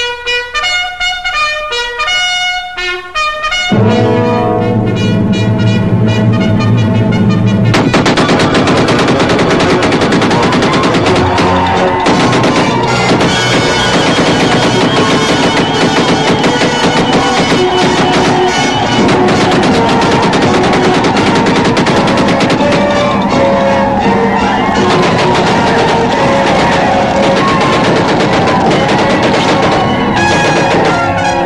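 Orchestral film score: a trumpet fanfare, then from about four seconds in loud full-orchestra battle music. From about eight seconds it is joined by a dense stream of rapid gunfire.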